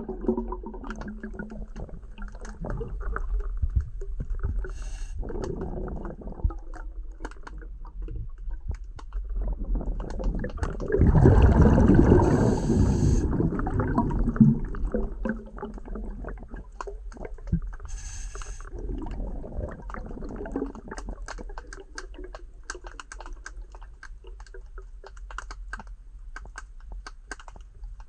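Water heard from underwater: a steady low gurgling rumble, with a louder rush of bubbling for about two seconds midway. Many small sharp clicks come in, most thickly toward the end.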